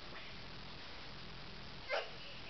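Quiet room tone with one short soft knock or rustle near the end.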